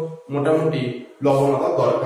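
A man speaking in drawn-out syllables that hold a steady pitch, broken by two short pauses.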